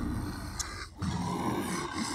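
A low, rough growling and grunting voice, a performer's imitation of the zombies at the door, with a short break a little before the middle.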